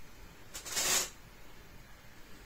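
Yarn and a crochet hook rustling as a stitch is worked: one short hiss about half a second in, lasting about half a second, over faint room noise.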